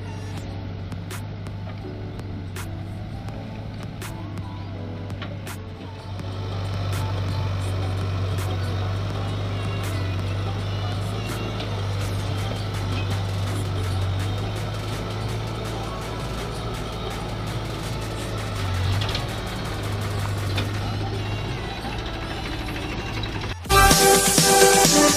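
Diesel engines of a backhoe loader and a tractor running steadily, getting louder about six seconds in, with background music over them. Loud electronic music starts suddenly just before the end.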